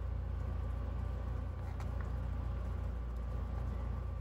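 Steady low hum that runs without change, with a faint click about two seconds in.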